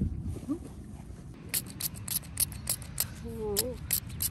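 Rapid, evenly spaced clicking, about six clicks a second, starting about a third of the way in, over a low steady rumble, with a short voiced 'ooh' near the end.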